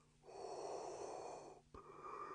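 A man's vocal imitation of Darth Vader's respirator breathing: slow, hissy breaths through the mouth, one lasting about a second and a half and the next starting near the end, with a short silent break between them.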